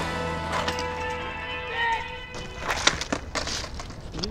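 Soundtrack music dying away on held notes, then a few sharp clacks of a skateboard clattering on pavement, the loudest about three seconds in.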